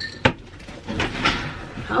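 A few sharp knocks and clatters, the strongest about a quarter second in, followed near the end by a woman calling "come".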